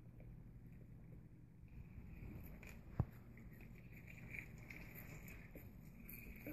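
Faint room tone with a single sharp knock about halfway through.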